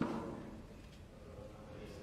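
A snooker ball set down on the table while the balls are re-spotted for a new frame: one knock at the start, fading within about a second, then quiet room tone.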